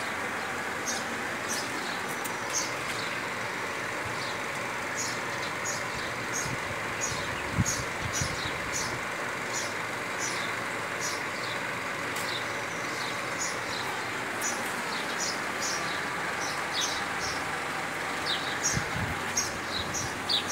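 Small birds chirping, short high chirps repeated irregularly about once or twice a second, over a steady rushing background noise, with a few low knocks.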